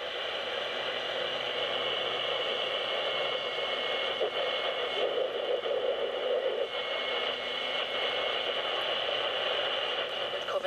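Sony ICF-A15W clock radio on the AM band giving steady static hiss while the dial is tuned between stations. It picks up a lot of interference, which the owner puts down to the computer equipment around it.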